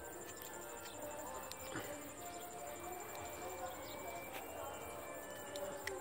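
Faint outdoor ambience with a steady, high-pitched insect trill, and small clicks and rustles as the earphone cable is pulled off its plastic holder.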